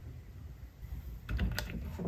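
Hard plastic toy pieces clicking and tapping together as they are handled, a quick run of several clicks in the second half.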